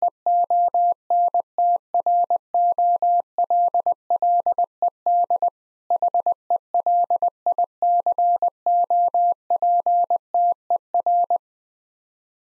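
Morse code sent at 20 words per minute: a single steady tone keyed on and off in dits and dahs, spelling out "remote controlled helicopter". It stops shortly before the end.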